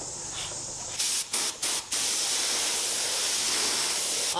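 Compressed-air gravity-feed spray gun with a 1.5 mm nozzle spraying water-based urethane paint onto a test piece. About a second in come three short trigger bursts of hiss, then a steady spray hiss of about two seconds. The paint is spraying normally through the gun.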